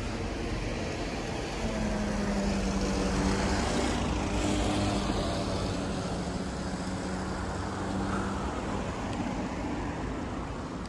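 Road traffic on a city street: a car engine running close by with a steady hum over the general noise of the road, swelling a little a few seconds in.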